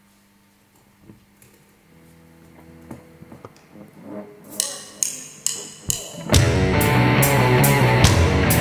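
Live rock band starting a song on electric guitars and drum kit. It opens almost silent with a few soft notes, then sharp hits come about every half second, and the full band comes in loud about six seconds in.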